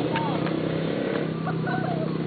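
Background conversation, with people talking softly and not close to the microphone, over a steady low hum.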